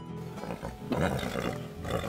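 A Chilean stallion calling, a loud cry about a second in, over background music.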